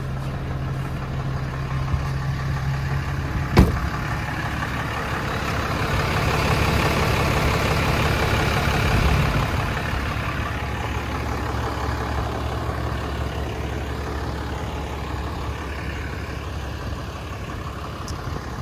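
Cummins 6.7-litre inline-six turbo-diesel of a Ram 3500 idling steadily, with one sharp knock about three and a half seconds in. The engine noise grows louder for a few seconds in the middle.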